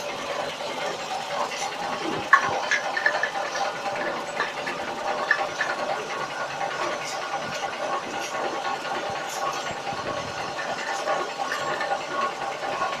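Bottle filling and capping machine with a rotary turntable running steadily: a constant mechanical hum with scattered sharp clinks as glass bottles move through the star wheel and capping head.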